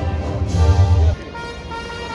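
Music of sustained, held tones over a heavy low bass. The bass drops out about a second in, leaving quieter held notes.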